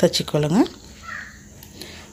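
A woman's voice: one drawn-out, pitch-bending syllable in the first half second or so, then quiet room tone.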